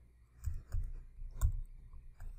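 Computer keyboard keys clicking as a short search term is typed, a few separate keystrokes with the loudest near the end.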